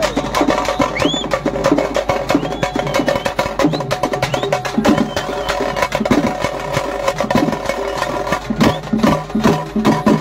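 Street drum band of snare and bass drums playing a loud, fast, driving beat with rapid stick strokes, a few short high whistle-like glides sounding over it.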